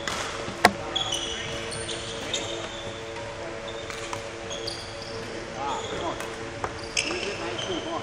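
Court shoes squeaking in short high chirps and footsteps knocking on a wooden badminton court floor as a player moves about the court. The loudest sound is one sharp knock about half a second in.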